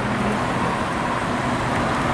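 Steady city street traffic noise from passing cars, an even hiss of tyres and engines with a low hum underneath.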